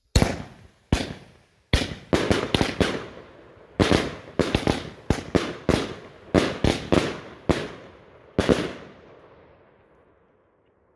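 A 16-shot 20 mm titanium salute firework cake firing. It sets off a rapid, uneven series of loud, sharp bangs with short echoing tails, ending in one last bang after a brief gap.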